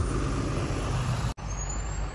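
A bus engine running with a steady low rumble, and a faint high whine slowly rising in pitch. The sound cuts out for an instant about one and a half seconds in.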